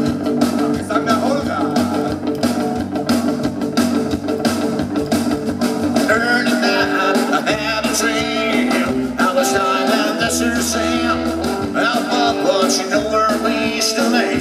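Live psychobilly band playing: slapped upright double bass, electric guitar and drum kit in a steady rock-and-roll beat.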